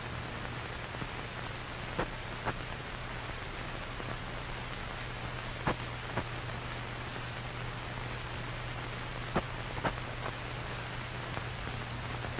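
Steady hiss with a low hum from an old film soundtrack, broken by a few faint clicks and pops.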